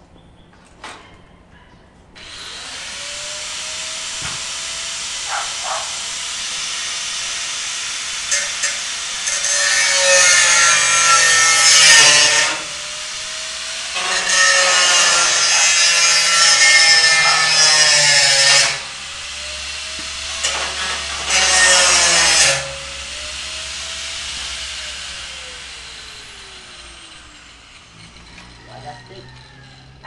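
A handheld electric power cutter starts about two seconds in and runs for over twenty seconds. Its motor whine dips in pitch as it bites into the material three times, about ten, fifteen and twenty-two seconds in, and it winds down near the end.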